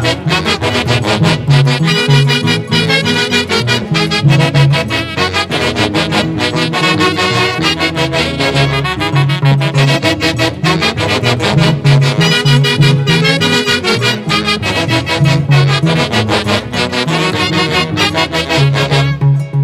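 Instrumental huaylarsh from an Andean folk orchestra: a section of saxophones playing the melody together over harp and violin, in a steady dance rhythm.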